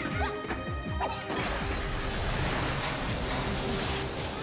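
Cartoon action sound effects: a few falling whistling sweeps in the first second, then a long crash that sets in about a second and a half in and runs on, over background music with held notes.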